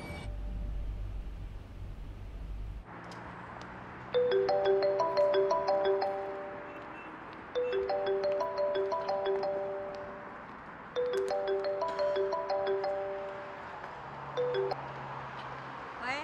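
Mobile phone ringtone: a short chiming melody that plays three times, about three and a half seconds apart, then a few notes more. It starts about four seconds in, after a low traffic rumble.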